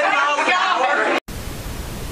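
People's voices that cut off suddenly about a second in, followed by a steady hiss of video static.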